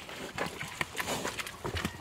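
Pigs eating grain at a wooden feeder: irregular chomping and knocking sounds, with shuffling in the mud.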